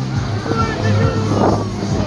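Tourist road train (trenzinho) running along a street, its engine a steady low hum under passengers' voices and music playing on board.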